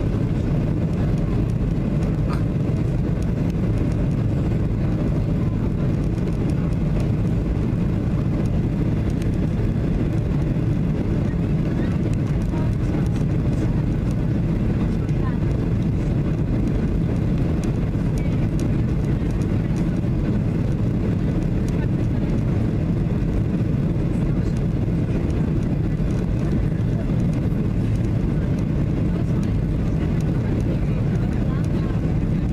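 Steady, low cabin noise inside a Ryanair Boeing 737 on final approach, with engines and airflow over the extended flaps heard from a window seat beside the wing.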